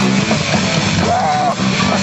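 Live instrumental rock band playing loud, with distorted electric guitars, bass and a drum kit.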